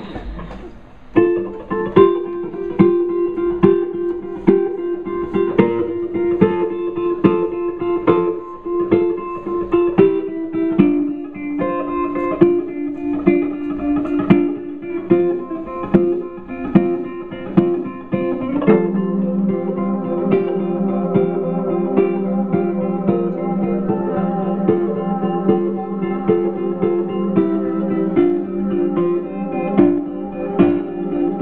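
Rock band playing live: an electric guitar figure over a steady drum beat starts about a second in, and the band fills out into a fuller sound about two-thirds of the way through.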